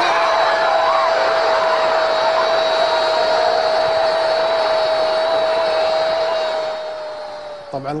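Football stadium crowd cheering a goal, under a football commentator's single long drawn-out shout of the goal, held on one note that sags slightly before it breaks off near the end.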